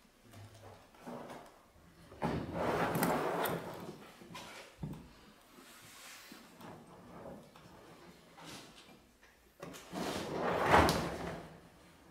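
Handling noise from a hard plastic drum case being opened and rummaged through. There are two longer bursts of scraping and rustling, about two seconds in and about ten seconds in, with scattered small knocks between.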